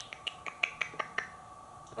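African grey parrot making a rapid run of sharp clicks, about five a second, stopping a little over a second in.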